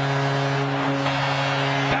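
Arena goal horn sounding one long steady note over a cheering crowd, signalling a home-team goal.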